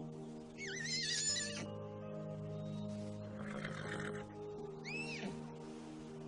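Film score with held chords, over which a foal whinnies: a wavering call that starts about half a second in and lasts about a second, then a short rising-and-falling call about five seconds in.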